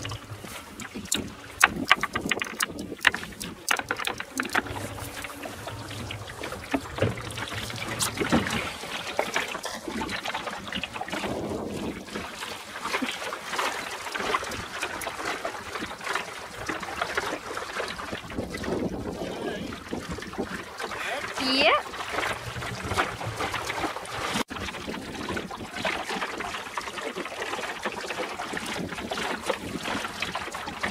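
Water washing along the hull of a small wooden sailing dinghy under way, with wind on the microphone. A run of sharp knocks comes in the first few seconds.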